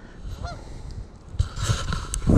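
A single short bird call, honk-like, about half a second in, over a low rumble, with a burst of rustling noise near the end.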